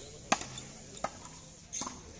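Frontón ball rally: three sharp smacks of a hard ball being hit and rebounding off the wall and court, about three-quarters of a second apart, the first the loudest.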